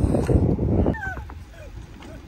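Wind rumbling on the microphone while riding an electric scooter. About a second in, a few short, high-pitched, falling squeaks.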